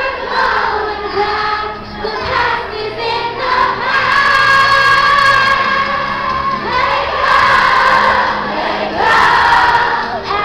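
A young girl singing into a microphone over a backing track, holding long sustained notes, the last one reached with an upward slide near the end.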